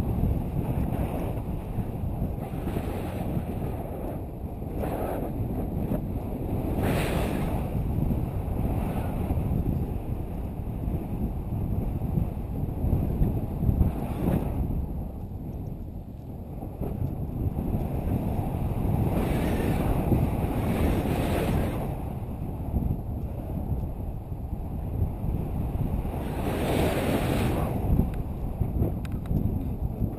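Wind rushing over the camera microphone in flight under a tandem paraglider: a steady low rumble with several stronger gusts.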